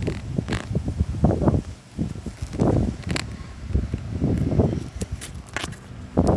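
Muffled rubbing and bumping of hands on a tablet's microphone as it is swung about, in irregular bursts with a few sharp clicks.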